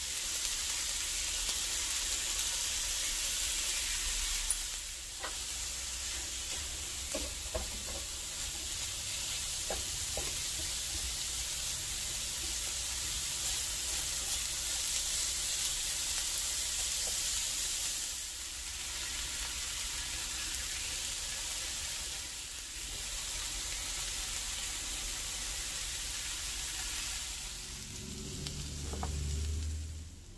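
Lamb liver strips, onion and peppers sizzling steadily as they fry in a black steel pan, stirred now and then with a silicone spatula. A single sharp click comes about four seconds in, and near the end the sizzling drops away under a low hum.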